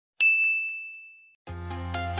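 A single bright ding sound effect that rings and fades away over about a second, followed about a second and a half in by background music with a steady low bass.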